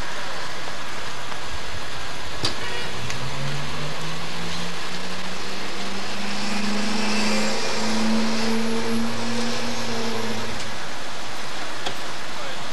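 A motor vehicle's engine running, its pitch rising slowly as it speeds up from about three seconds in, then dropping away shortly before the end, over a steady outdoor hiss. A single sharp click sounds a little before the engine begins.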